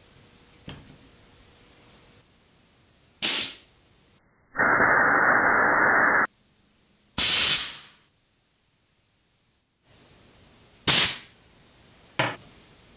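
Compressed air from an air-compressor blowgun blasting through a pipe to fire pieces of straw: a short sharp blast about three seconds in and another near the end, each fading quickly. Between them comes a longer, duller hiss of nearly two seconds, then another short blast.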